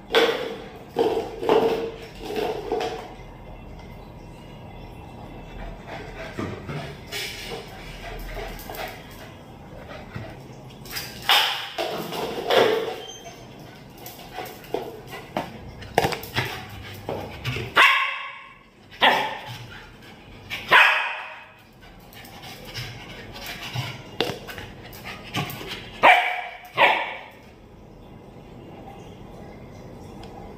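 A pet dog barking in short, sharp bursts while excited by play with a plastic container, the barks coming thicker and louder in the second half.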